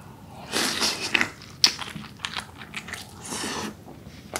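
Close-miked biting into and chewing a chunk of kimchi-braised pork: a wet bite about half a second in, then a run of short sharp mouth clicks and smacks, and a breathy hiss near the end.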